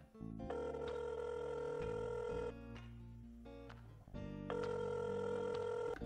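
Telephone ringing tone: two long rings of about two seconds each, about two seconds apart, over soft background music. It is the ringback heard while an outgoing call waits to be answered.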